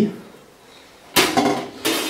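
Heavy Masterwork ride cymbal clanking as it is handled: a sharp metallic hit about a second in that rings briefly, then a second hit near the end.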